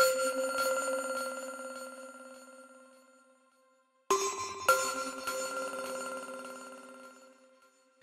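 Vienna Smart Spheres 'Tibet' plucked sound-design preset played from a keyboard. A chord is struck and left to ring, fading out over about three seconds. A second chord comes about four seconds in, with another note added half a second later, and fades the same way.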